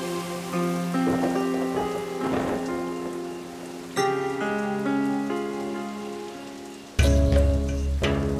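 Heavy rain falling under a background score of held notes that change every second or so. A sudden deep boom comes about seven seconds in.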